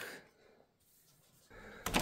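Mostly near silence, just quiet room tone, with the background hiss rising slightly about three-quarters of the way through and a short click just before the end.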